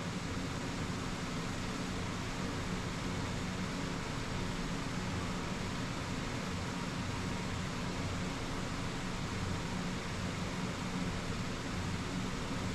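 Steady fan hiss with a low, even hum underneath, unchanging, with no distinct events.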